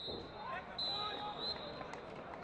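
Referee's pea whistle blowing the final whistle: the end of a short blast right at the start, then a longer steady blast a little under a second in, over players' shouts.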